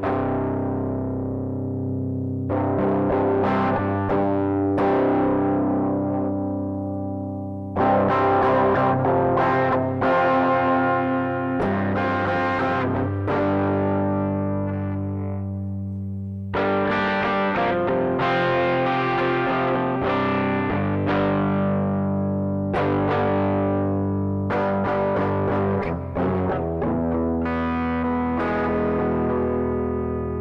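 Electric guitar through a Zoom G1 multi-effects pedal on its Marshall Plexi amp model with the gain at 10, playing distorted strummed chords that ring out and fade. The tone and level jump abruptly about eight and seventeen seconds in as the pedal's low, mid and high EQ settings are changed.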